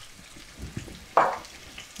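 Butternut squash cubes with celery, onion and garlic sizzling quietly in olive oil in a pot on a gas burner. A short rustling burst stands out a little over a second in.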